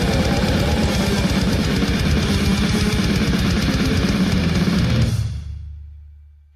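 Brutal death metal song with fast, dense drumming and heavily distorted, down-tuned guitars. It ends about five seconds in, leaving a low note ringing and fading out.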